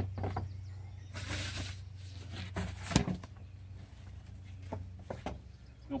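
Cedar siding boards being handled: a brief scrape about a second in, one sharp knock about three seconds in, and a couple of lighter taps near the end, over a steady low hum.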